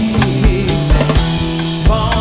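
A live rock band playing an instrumental passage: strummed acoustic guitar and electric guitar over a drum kit beating steadily on bass drum and snare.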